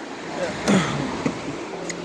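A person's voice, with brief unclear vocal sounds whose pitch drops, from about half a second in to just past a second, over a steady rushing noise.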